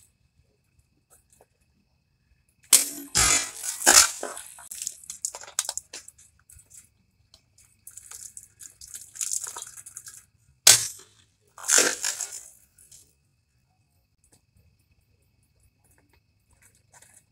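A Case XX kitchen knife slashing through a plastic water bottle: a cluster of sharp crunching strikes about three seconds in and another near eleven seconds, each with a brief noisy tail. A softer stretch of plastic crinkling falls between them.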